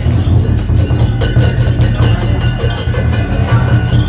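Lion dance percussion: a big drum beaten with clashing cymbals, a loud, busy rhythm with cymbal crashes several times a second.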